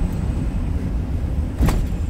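Steady low rumble of a van's engine and road noise heard inside the cab while driving, with one short sharp click near the end.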